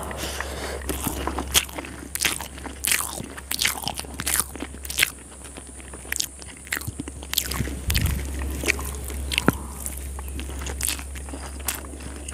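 Close-miked chewing of a mouthful of curry-soaked rice: quick, irregular wet mouth clicks and smacks. Near the end, fingers mix rice on the steel plate.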